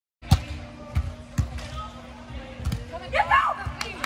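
Beach volleyball being struck in a rally: four sharp smacks of hands and forearms on the ball, the first the loudest. A player shouts a call near the end.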